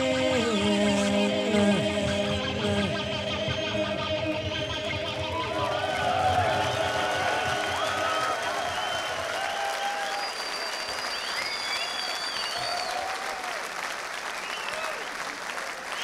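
A rock band's closing notes, electric guitar and sustained chords stepping downward and ringing out over the first few seconds. Then audience applause and cheering takes over, with high whistles through it.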